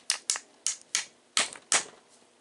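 Sharp taps with a tool handle on the metal cylinder sleeve of an RC car engine, about six in two seconds at an uneven pace, driving the tight sleeve down over the piston.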